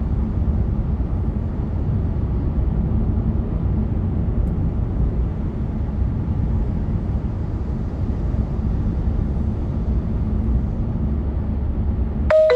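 Steady low road rumble of a car cruising at highway speed, heard from inside the cabin: tyre and engine noise with no change in pitch or level.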